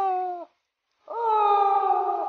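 Two long wolf-like "awoo" howls: the first ends about half a second in, and after a short break the second starts about a second in. Each holds a steady pitch that sags slowly.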